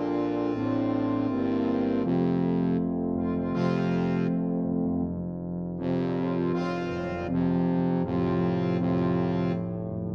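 Orchestral music with brass to the fore, playing sustained chords that change every half second to a second.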